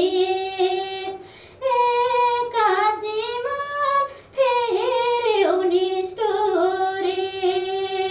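A woman singing a cappella: long held notes joined by ornamented turns, in phrases broken by two short breaths.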